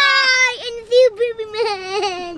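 A young child's high-pitched voice in long, drawn-out wails or cries, two stretches back to back.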